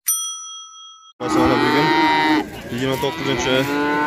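A short bell-like notification chime rings and fades, then cattle moo loudly at close range: two long, drawn-out moos, the first about a second long and the second about two seconds.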